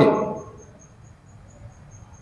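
A faint, high-pitched chirp repeating evenly, about six times a second, under the fading end of a man's voice.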